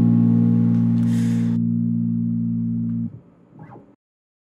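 Acoustic guitar's final strummed chord ringing out and slowly fading, then damped suddenly about three seconds in. A faint brief noise follows near the end.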